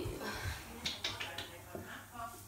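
Light handling sounds by a bath: a few short, sharp clicks about a second in, with soft low thuds.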